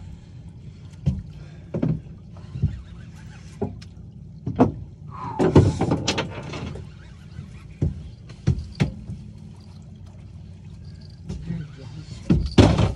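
A steady low hum from the fishing boat, with scattered sharp knocks and thumps of gear being handled on deck. A louder, noisier burst comes about five to seven seconds in.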